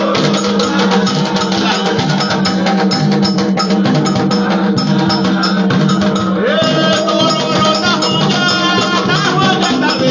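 Candomblé ceremonial music: drums and rattles keep a steady rhythm under group singing.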